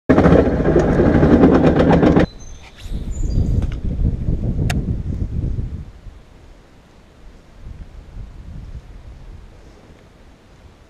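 A small tractor's engine running loud with a rapid even pulse, cut off abruptly about two seconds in. A lower rumble with a single click follows and fades out by about six seconds, leaving a quiet steady outdoor background.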